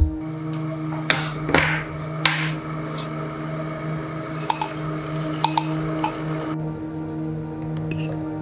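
Coffee beans poured from a bag into a stainless-steel hand coffee grinder, rattling in for a couple of seconds midway, with clinks and taps as the grinder is handled. Background music plays under it.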